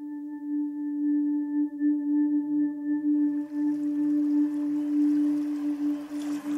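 Meditation music: one long sustained ringing tone with faint higher overtones, its loudness wavering in a slow pulse. A soft hiss builds in underneath from about halfway through.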